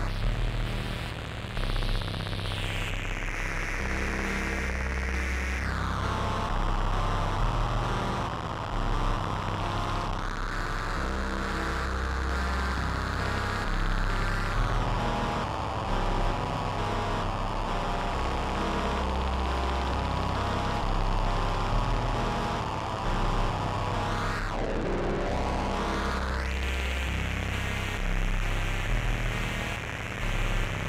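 Electronic music played live on synthesizers: sustained bass notes changing every couple of seconds under a dense wash of noise. A filtered sweep falls in pitch near the start, and another dips and rises again near the end.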